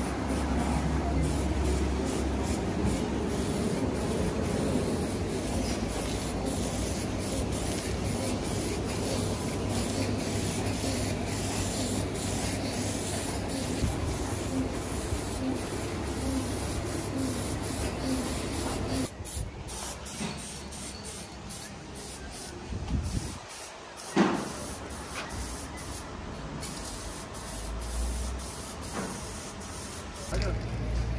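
Aerosol spray can of matt black paint spraying onto grey-primed steel tube, a continuous hiss for most of the first two-thirds. It then turns quieter and broken, with a sharp knock a little before the end.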